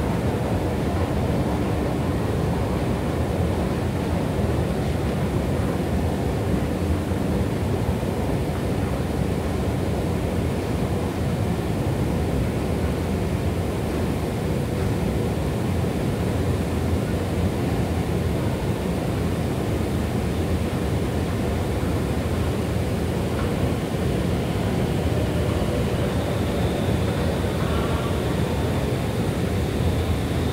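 A long escalator running, heard while riding it: a steady low rumble from its moving steps and drive. A faint thin high whine comes in near the end.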